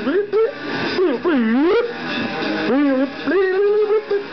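A man wailing wordlessly into a handheld microphone, his voice sliding up and down in long swoops, with an electric guitar playing underneath.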